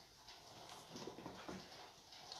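Near silence: faint room tone, with a few soft, indistinct sounds around the middle.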